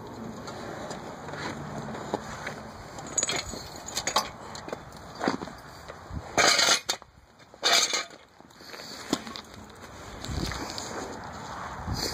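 Movement and handling noise as a person shifts about on a bare metal mower frame over gravel: rustling, scattered light clicks and knocks, and two short loud rushes of scraping noise about six and a half and seven and a half seconds in.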